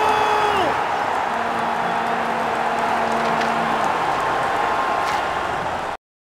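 Stadium crowd noise from a large crowd, a steady roar without words. A held tone drops away in pitch under a second in, and the sound cuts off suddenly at the end.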